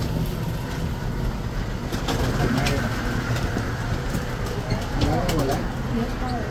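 Steady low rumble of a railway station platform heard from inside a moving glass lift car, with faint distant voices about two and a half seconds in and again near the end.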